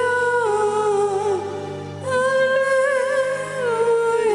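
A single voice hums a slow hymn melody in long held notes. The pitch steps down about half a second in, there is a brief lull between phrases just before two seconds, and the tune falls again near the end.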